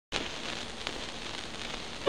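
Surface noise of a 1925 Columbia 78 rpm shellac disc turning in its lead-in groove: steady hiss with crackle and a couple of faint clicks.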